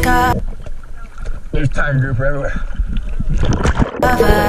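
Background music cuts off about a third of a second in, giving way to muffled underwater camera sound with scattered knocks and a brief muffled voice in the middle; the music comes back at the very end.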